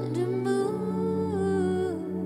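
A female worship vocalist holding long sung notes, sliding down into a new note at the start and holding it, over a soft sustained keyboard pad in a slow worship ballad.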